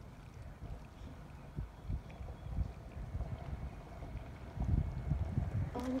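Wind buffeting a phone microphone: an uneven, gusty low rumble that swells briefly near the end.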